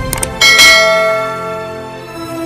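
Subscribe-button sound effect: a couple of quick mouse clicks, then a loud struck bell that rings out and fades over about a second and a half, over background music.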